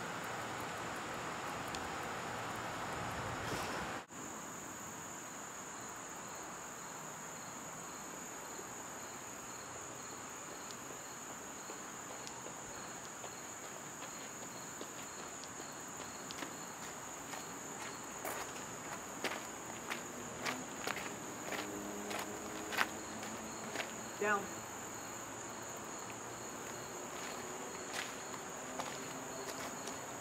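Steady high-pitched insect drone with a faint, evenly spaced chirping under it. From about eighteen seconds in come a run of light footsteps on gravel, and one short spoken command.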